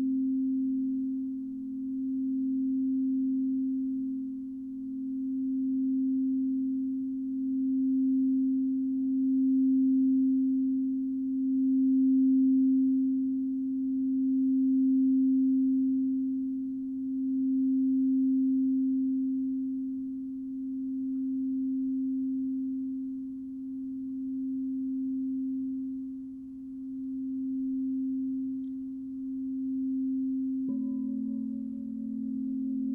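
A large frosted quartz crystal singing bowl, rimmed with a rubber-ball mallet, sounding one sustained low tone that swells and fades every two to three seconds.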